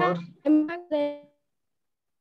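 A voice over a bad video-call connection breaking up: the last word of speech, then two short garbled fragments that come through as flat, tone-like bleeps, before the audio cuts out to dead silence about halfway through.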